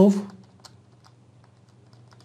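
Faint, irregular clicking of computer keys, a few small clicks a second, over a low steady hum, after a spoken word that ends about a third of a second in.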